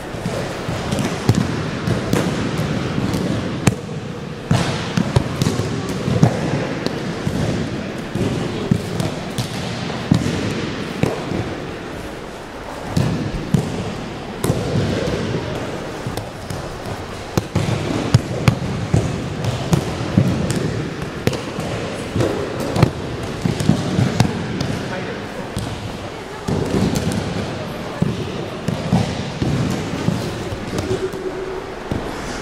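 Many pairs practising aikido on wrestling mats: irregular thuds and slaps of bodies, knees and hands hitting the mats, over indistinct talk from the students.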